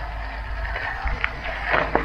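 Steady low wind noise on the microphone over the crunch of bicycle tyres rolling on a gravel dirt road, with a few faint scattered clicks.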